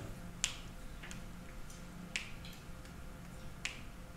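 Four or five sharp, separate clicks spaced irregularly over a faint steady room hum.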